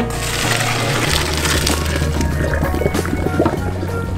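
Hot pasta water and noodles poured from a pot into a stainless-steel colander in a sink: a rushing splash for about the first two seconds. Background music plays under it throughout.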